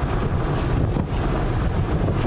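Steady low rumble of a car's engine and tyres, heard from inside the cabin while driving over a rough, broken road.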